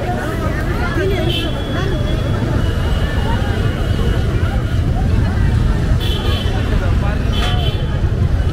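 Busy street traffic, mostly motorcycles and cars running at low speed, a steady low rumble mixed with crowd chatter. A few short high-pitched tones cut through it, about a second and a half in and twice more near the end.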